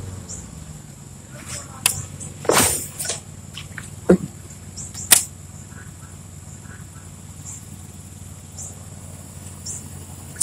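A few short sharp knocks and clicks of fishing gear being handled in a kayak, the loudest a little after two seconds in, over a faint steady hum.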